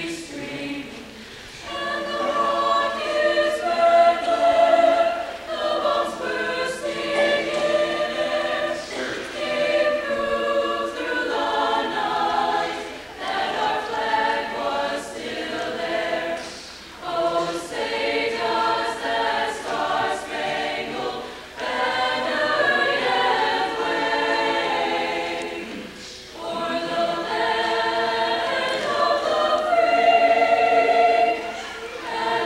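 A choir singing a patriotic song. The phrases break with short pauses, the last of them a few seconds before the end.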